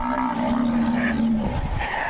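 An animal's long, low call lasting about a second and a half, sinking slightly in pitch, followed by low rumbling.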